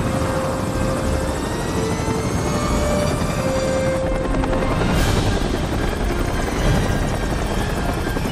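Helicopter rotor and engine running steadily close by, mixed with film score music of held notes. A sharp hit cuts through about five seconds in.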